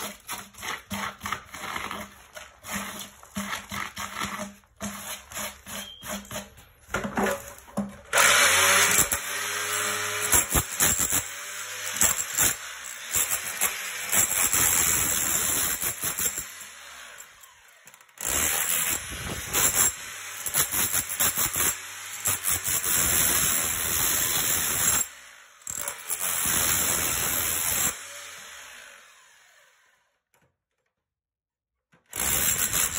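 Scattered knocks and scrapes of broken concrete being handled, then about eight seconds in a power drill with a masonry bit starts boring into the concrete around the drain pipe. It runs in long spells, stopping briefly twice, and stops near the end.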